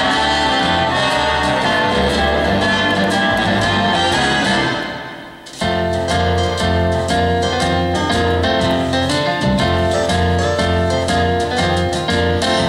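Instrumental intro of a recorded backing track for a vocal number, playing before the singer comes in. About five seconds in the music fades down briefly, then cuts back in abruptly with a strong, steady bass.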